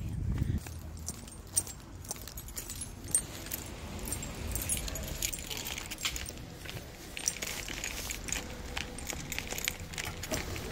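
Light metallic jingling and clicking from small metal items carried by a person walking, busiest in the second half. There is a brief low wind rumble on the microphone at the very start.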